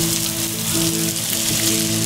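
Food sizzling in a frying pan on a gas stove, a steady hiss, under background music of slow held notes.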